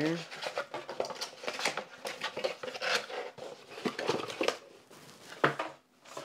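Cardboard packaging being handled and moved across a wooden desk: an irregular run of rustling, scraping and light knocks, with a sharper knock about five and a half seconds in.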